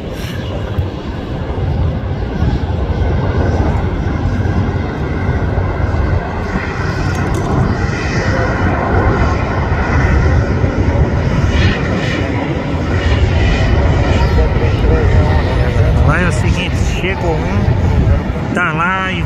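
Boeing 737-800 jet engines during landing: a steady, loud roar that grows louder as the airliner touches down and rolls out on the runway.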